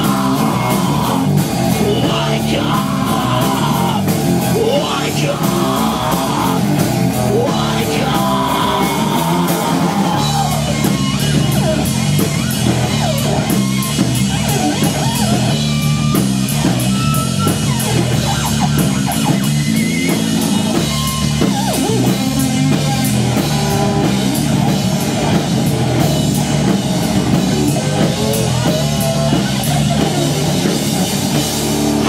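Live rock band playing loud: electric guitar, bass guitar and drum kit, with the drums striking steadily throughout and a change in the playing about ten seconds in.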